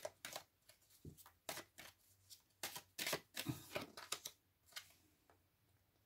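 A deck of oracle cards being shuffled and handled by hand: a run of soft card clicks and flicks, busiest about three to four seconds in, then dying away.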